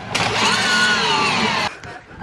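Zipline trolley pulleys whirring along the steel cable as a rider comes in to the landing platform. The whine rises and then falls in pitch and cuts off abruptly about a second and a half in.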